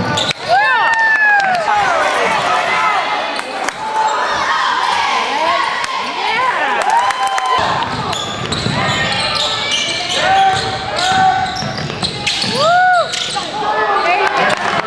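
Basketball game on a hardwood gym floor: sneakers squeaking in short rising-and-falling chirps, a ball bouncing, and spectators' voices throughout. The gym hall echoes.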